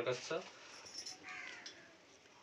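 Speech trails off, then a faint bird call sounds once, a short, slightly falling cry, a little over a second in.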